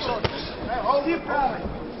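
A single sharp thud about a quarter of a second in: a strike landing in a heavyweight kickboxing bout.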